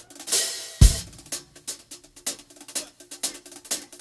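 Live drum kit starting a song: a cymbal crash and bass-drum hit just under a second in, then a steady hi-hat and snare pattern at about three strokes a second.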